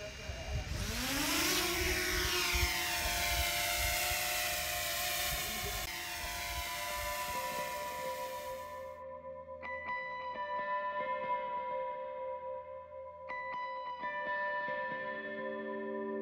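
Quadcopter drone's motors spinning up for takeoff: a rising whine that settles into a steady propeller buzz. It cuts off suddenly about nine seconds in, leaving only background music, which has been fading in underneath.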